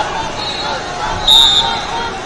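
A referee's whistle gives one short shrill blast about a third of the way through, over steady crowd chatter in a large hall; it signals the start of the wrestling bout.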